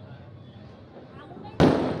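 A single loud firecracker bang about one and a half seconds in, sudden and sharp, dying away quickly, over faint distant voices.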